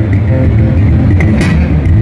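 Two electric bass guitars, a Fodera and a Music Man StingRay, playing a funk groove together through amplifiers. Busy low notes run throughout, with a sharp percussive attack about a second and a half in.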